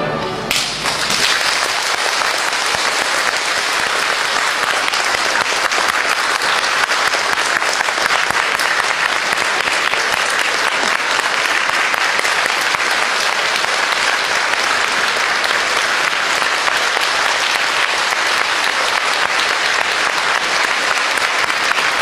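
The last chord of a symphonic wind band dies away in the first half second, then a concert hall audience applauds steadily.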